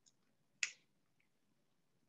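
Near silence, broken about half a second in by a single short, sharp click.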